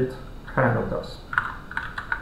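Computer keyboard typing: a short run of quick key clicks in the second half, after a few spoken words.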